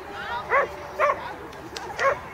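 A dog barking twice, about half a second apart, short sharp barks.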